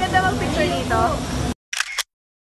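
People's voices that cut off abruptly about one and a half seconds in, followed near the end by a single camera shutter click.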